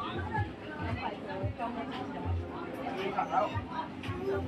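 Several voices of people nearby talking and chattering, the words not clear, with the loudest voices a little after the middle.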